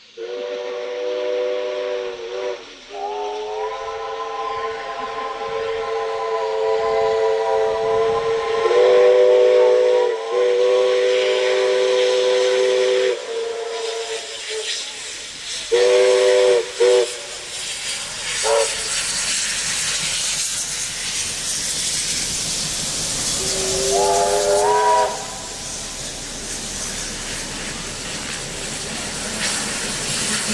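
Steam locomotive chime whistles blowing: a short blast, then a long whistle of about ten seconds with a second whistle sounding over it for its last few seconds, two short toots about midway and another blast near the end. From about halfway the loud hiss of steam and exhaust grows as two steam locomotives pass close by side by side.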